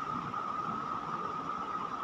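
Steady background hiss with a constant mid-pitched hum: room tone in a pause between spoken phrases.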